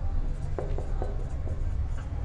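Marker pen writing numbers on a whiteboard, a few short strokes of the tip against the board.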